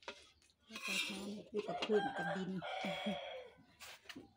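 A rooster crowing, with a woman's voice briefly over it.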